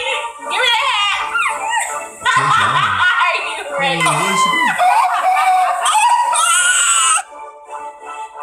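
Loud wordless yells, shrieks and laughter from a man and a woman over background music. The voices stop suddenly near the end, leaving only the music.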